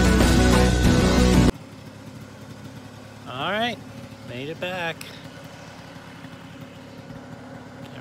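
Background music that cuts off suddenly about a second and a half in, followed by a 49cc scooter engine idling quietly under a few spoken words.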